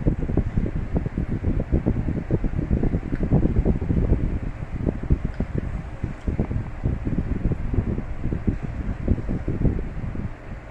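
Loud, continuous low rumble of air buffeting the microphone, fluttering rapidly, such as a fan blowing across it.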